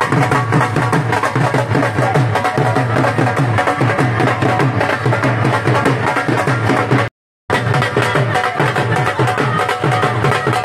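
Dhol drums beaten with sticks in a fast, steady rhythm. The sound cuts out for a moment about seven seconds in.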